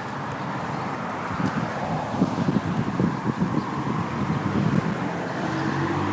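City street traffic noise from cars on the road alongside, a steady wash with uneven low rumbling through the middle.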